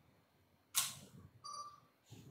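Faint microphone noises during a mic check on a faulty sound setup: a short noisy burst on the microphone about three quarters of a second in, then a brief electronic beep just past the middle.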